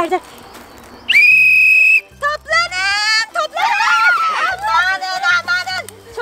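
A whistle blown in one long, steady blast of about a second, the loudest sound here, followed by excited voices calling out.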